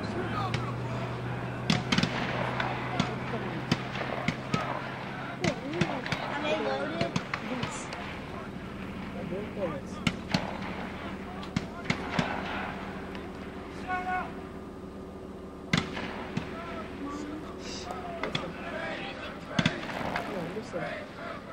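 Rifle fire on a shooting range: a dozen or so sharp shots at irregular intervals, some close together, over a steady low hum.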